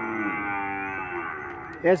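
A zebu cow mooing: one long call that slowly falls in pitch and fades out near the end.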